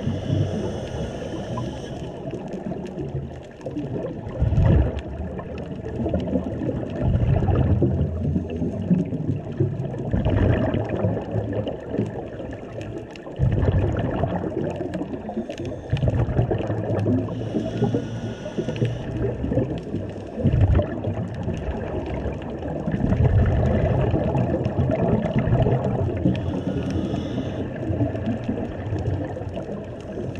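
Scuba diver breathing through a regulator, heard underwater. A short hissing inhale comes roughly every nine seconds, each followed by longer, louder gurgling rushes of exhaled bubbles.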